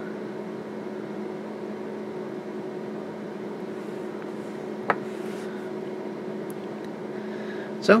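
Steady machine hum with two constant tones, and a single sharp click about five seconds in as an alligator clip is fastened onto the battery cell.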